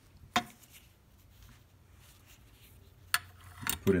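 Small steel action parts clicking against the brass frame of an 1866-pattern lever-action rifle as they are handled and fitted: one click about a third of a second in, then a sharp click a little after three seconds and a few quick ones just before the end.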